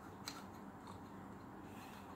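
Faint clicks of a manual caulking gun as its trigger is squeezed and the plunger rod advances into the silicone sealant tube, with one small click about a quarter second in and little else.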